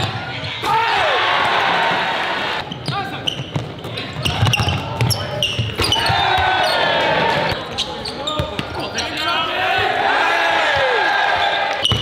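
Basketball game sound in a gymnasium, cut together from several plays: the ball bouncing on the hardwood, sneakers squeaking and spectators' voices in an echoing hall.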